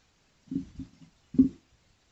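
A heavy painted roof-tile pot being turned by hand on a tiled tabletop: two short, dull scrapes or knocks of its base against the tiles, the second one louder.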